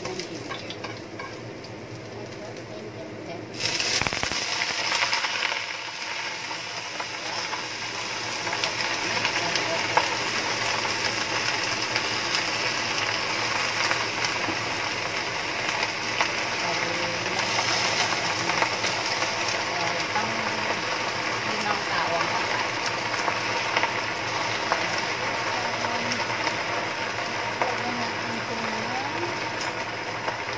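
Garlic sizzling quietly in oil in a nonstick frying pan. About three and a half seconds in, a sudden loud burst of sizzling as a heap of Indian lettuce (yau mak choi) goes into the hot oil, then steady loud frying.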